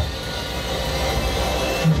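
Cinematic trailer music and sound design: a deep steady rumble under a held, shimmering tone, played through a Sonos Arc soundbar and subwoofer.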